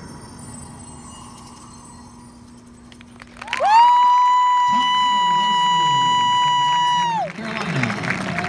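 The last of the show music dies away, then a spectator close by lets out one loud, high, held cheering scream that swoops up, holds steady for nearly four seconds and falls off. The crowd cheers and applauds under and after it.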